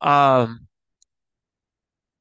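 A man's voice drawing out a short phrase with a falling pitch, cut off after about half a second into dead silence, with one faint tick about a second in.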